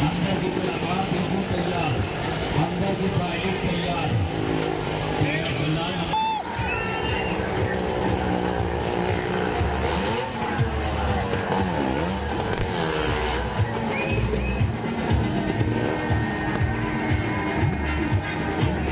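Motorcycle engine revving up and down as it rides round the vertical wall of a well-of-death stunt drum, with music playing over it.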